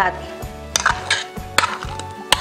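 Several sharp clinks of a utensil against dishes as mashed banana is tipped from a plate into a plastic mixing bowl, over steady background music.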